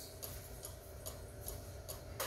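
Faint, even ticking, roughly two ticks a second, over a low steady room hum.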